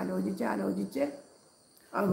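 A woman singing a devotional song unaccompanied, holding a steady pitch in her phrases; about a second in her voice stops for a near-silent pause of almost a second before the next phrase begins.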